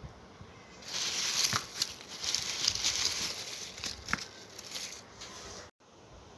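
Dry rustling and crinkling of papery onion skins as a heap of onions is handled, lasting about three and a half seconds from a second in, with two light knocks of onions bumping together.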